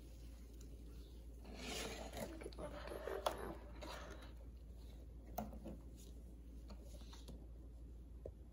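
Cardboard rustling and scraping as a box lid is lifted off, mostly between about one and a half and four seconds in, followed by a few light clicks and taps.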